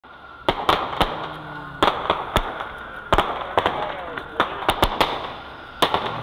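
Fireworks going off: about a dozen sharp bangs at irregular intervals, some in quick pairs.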